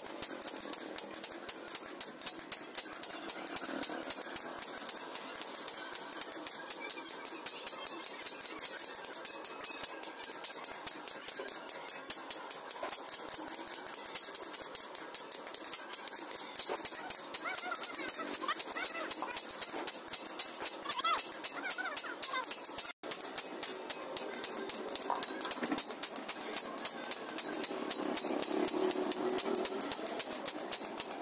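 Rapid, steady hammer blows on a cold chisel cutting a steel sheet laid over an anvil block, several strikes a second. The strikes break off for an instant about three quarters of the way through, then carry on.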